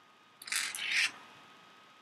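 Small pebbles pushed and set down on a paper counting board by hand: two short scratchy scrapes about half a second in.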